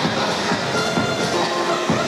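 Wrestler's entrance music played loud over a PA in a large hall, with a steady beat about twice a second.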